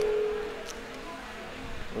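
A man's voice holds a drawn-out vowel for about half a second. Then comes a pause with only faint, even background noise and a single faint tick.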